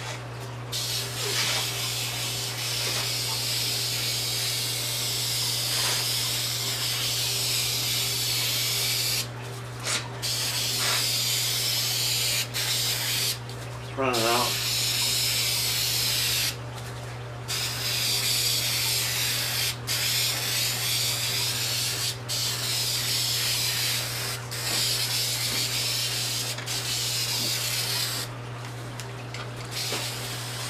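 Aerosol spray-paint can hissing in long passes over a car hood, cut by short pauses between passes, over the steady low hum of an air mover.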